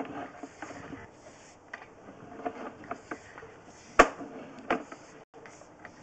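Sewer-inspection camera push cable being hauled back out of the line by hand: a rattle of scattered clicks and knocks, with a sharp knock about four seconds in and another just before five seconds.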